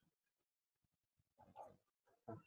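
Near silence: room tone, with a faint, short voice-like sound about one and a half seconds in.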